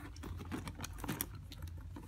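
Handling noise: irregular light clicks and taps as a leather handbag with metal rings and buckles is turned over by hand.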